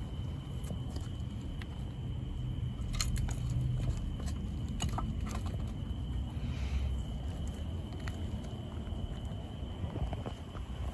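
A few sharp metallic clicks and scrapes over a steady low rumble, as a bare crankshaft in a stripped LS engine block is worked by hand. It is still stiff and hard to turn, which the owner puts down to spun cam bearings.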